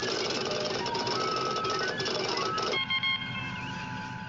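Sci-fi computer sound effect: short bleeping tones jumping between pitches over a busy mechanical chatter. It cuts off near the three-second mark, leaving a quieter steady electronic hum with a few held tones.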